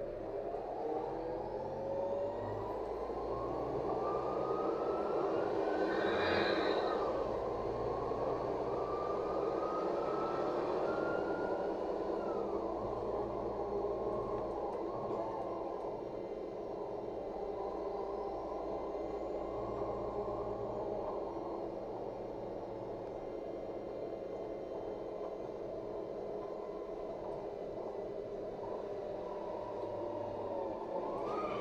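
Inside a LiAZ 5292.67 natural-gas city bus pulling away from a stop: a drivetrain whine rises steadily for about twelve seconds as the bus accelerates, drops sharply at a gear change, then the bus cruises with a steady engine hum and road noise.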